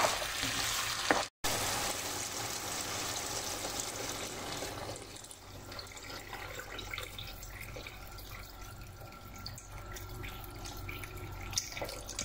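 Water poured in a steady stream into a frying pan of sizzling diced vegetables and tomato sauce, splashing into the sauce. It opens with a second of stirring and sizzling and a sudden brief gap, and the splashing softens about five seconds in.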